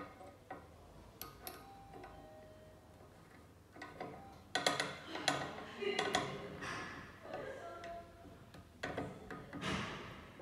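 Hex key working the fixture clamp screws of a bottle cap torque tester: irregular metal clicks and rattles as the key seats and turns. They come in bunches, busiest around the middle and again near the end, with a few short metallic rings between.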